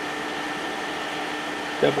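Steady whirring hum of the K40 CO2 laser cutter's ventilation fan and support equipment running, with a low constant tone in it.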